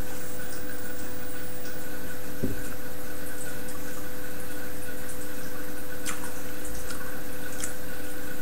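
A sip of beer from a glass, then a few faint small ticks, over a steady electrical hum and hiss.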